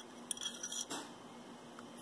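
A few faint light clicks of a metal ring sliding along a metal ring-sizer stick as its size is read, then quiet.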